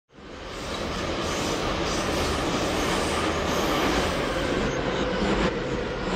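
Intro sound effect of a metal track: a steady noisy rumble, like train or city noise, that fades in over the first second and then holds.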